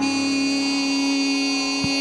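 Gospel worship song: a singer holds one long steady note through a microphone, with the worship band behind.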